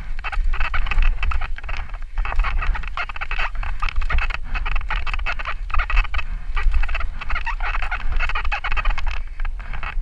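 Santa Cruz Nomad mountain bike descending fast over a rocky dirt trail: continuous tyre noise and clatter of the chain and bike over rocks and roots, with many short rattles and clicks, over a low wind rumble on the mic.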